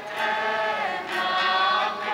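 A choir singing a hymn in long held notes that shift in pitch a few times.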